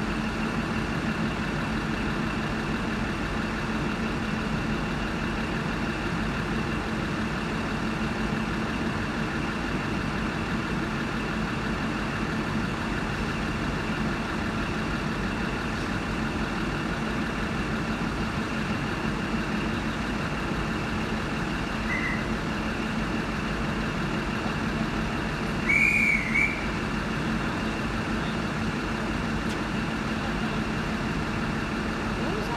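Heritage diesel rail motor standing at the platform with its engine idling, a steady drone with a constant low hum. Near the end comes a short high whistle-like chirp, with a fainter one a few seconds before it.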